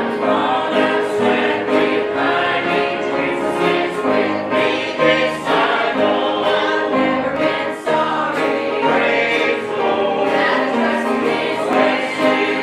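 Mixed church choir of men and women singing a gospel hymn, accompanied by banjo and bass guitar.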